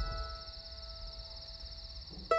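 Lingering notes of a soft plucked-guitar music cue ring out and fade, one low note held almost to the end. Underneath runs a steady, fast-pulsing high trill like night insects.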